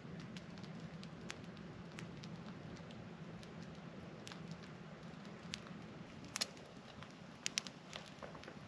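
Wood campfire crackling, with scattered small pops and a few sharper pops near the end.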